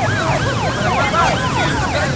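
Emergency-vehicle siren in a fast yelp: quick rising-and-falling wails, several a second, overlapping over street noise.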